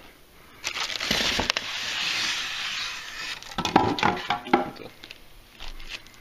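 Foam packing inserts and a cardboard box being handled as the packing is pulled out: a long rustling scrape, then several sharper scrapes and knocks.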